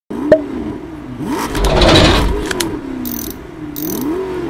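Car engine revving over and over, its pitch rising and falling. There is a sharp click just after the start, a loud rush of noise about two seconds in, and short hissing bursts near the end.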